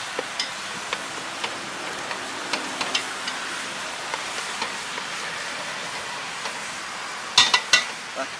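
Wooden chopsticks stirring tomatoes and meat frying in an aluminium pot over a wood fire: a steady sizzle with scattered light clicks of the chopsticks against the pot. Near the end comes a quick run of louder knocks, the loudest sound, as the chopsticks strike the pot.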